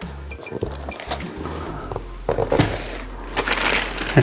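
Cardboard box being set down on a workbench and opened, with plastic packaging rustling in a few short bursts, over background music.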